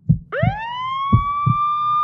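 Siren sound effect: one wail that sweeps quickly up in pitch about a quarter second in and then holds steady, over low double thumps about once a second.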